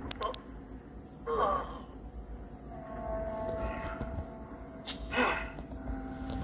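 Low film soundtrack: two short breathy vocal sounds, about a second in and again near the end, over faint music with held tones that come in around the middle.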